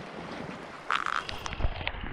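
Shallow creek water running over stones, then a brief splash about a second in as hands and camera dip into the water; after that the sound turns muffled and dull, heard from under the water, with low knocks and gurgles.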